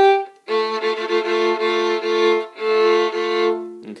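Violin bowed in double stops, two notes sounding together, in a short run of strokes with a brief break about two and a half seconds in.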